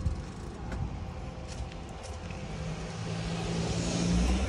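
A road vehicle's engine running on a nearby street, with a low steady hum that grows louder toward the end as it comes closer, over a low rumble of wind on the phone's microphone.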